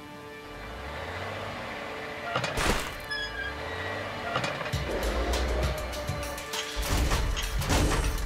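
Cartoon background music with sustained tones and a low bass, broken by a couple of heavy clunks, about two and a half seconds in and again near the end.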